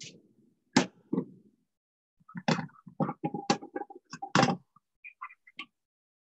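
Cookware clattering on a stovetop: about half a dozen sharp knocks and clanks in quick succession, one ringing briefly, then a few lighter clicks near the end.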